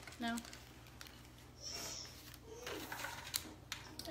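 Plastic squeeze bottle of cannoli filling being squeezed into mini cannoli cups: a few light clicks and a short hiss about halfway through.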